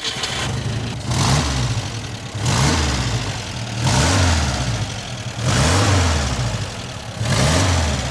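The four-cylinder 1.8-litre engine of a 1977 Dodge 1500 GT100, with twin horizontal Stromberg carburettors, running and revved in five short throttle blips, about one every second and a half.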